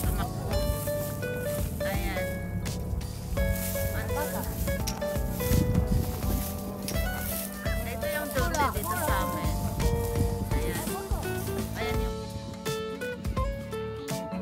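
Background music, a melody of held notes, with voices faintly beneath it.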